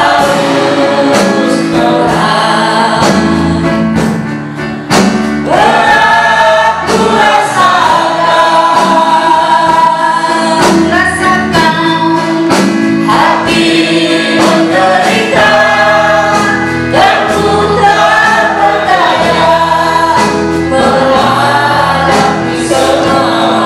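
A small mixed group of men and women singing an Indonesian gospel worship song into microphones, backed by keyboard, electric guitar and drums.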